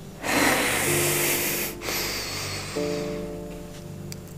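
A man's long, heavy exhale, a loud rushing breath in the first two seconds, over the held notes of a drama underscore. A fuller sustained chord comes in about three seconds in.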